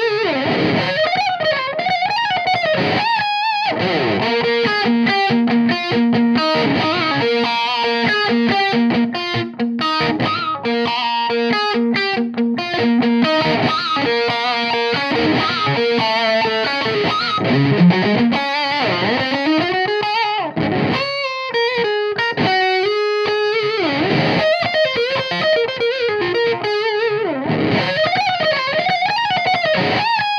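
Electric guitar played through the Ignite Amps TS-999 SubScreamer overdrive plug-in, a Tube Screamer-style overdrive, running a lead line full of bent notes with short pauses about 3 and 21 seconds in.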